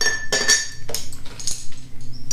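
A paintbrush clinking against a water pot: several light ringing clinks.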